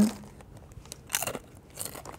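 Crisp crunches of a Ruffles potato chip, two short ones, about a second in and near the end, over faint rustling of the chip bag.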